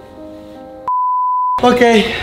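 Background music of held notes, then everything else cuts out for a single steady high-pitched censor bleep lasting under a second. A man's voice follows right after.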